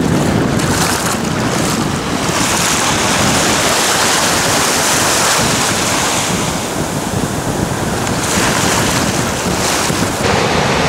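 Small, gentle ocean waves washing up and lapping at the water's edge, with a louder hiss of wash from about two to six seconds in. Wind buffets the microphone underneath.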